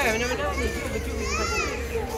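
Young children's voices and chatter, with one long high-pitched child's call that rises and falls about a second in.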